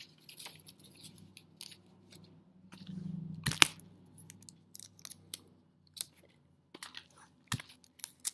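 Paper craft being handled with sticky tape: irregular crinkling and rustling with short snaps, the sharpest about three and a half seconds in and another near the end.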